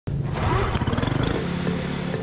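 Quarter midget race car's small single-cylinder engine running and revving unevenly, settling to a steadier note about two-thirds of the way through.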